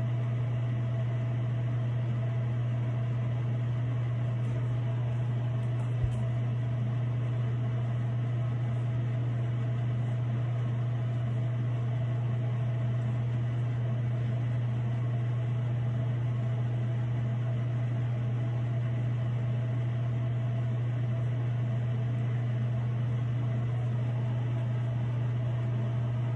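Steady low mechanical hum with a light hiss, as from a running ventilation fan, with a single faint click about six seconds in.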